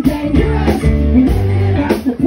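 Live rock band playing: electric guitar to the fore over bass guitar and drums.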